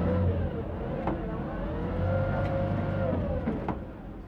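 Water shuttle boat's engine running with a steady low hum; its pitch rises and then falls back about halfway through as the boat manoeuvres.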